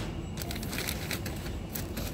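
Rustling and light clicking of packaged goods in plastic and cardboard being handled on a shop shelf.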